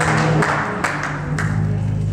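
Church music answering the preacher's call: sustained low organ or keyboard chords with sharp beats about twice a second, as the congregation claps along.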